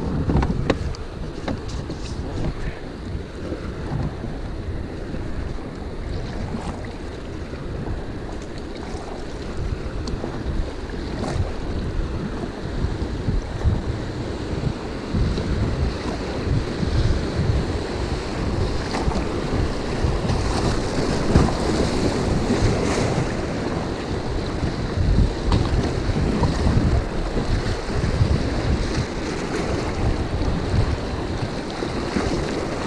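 Rushing river rapids and water slapping against a plastic kayak hull, with wind buffeting the camera microphone in low rumbles. The water noise grows louder past the halfway point as the kayak runs into the whitewater.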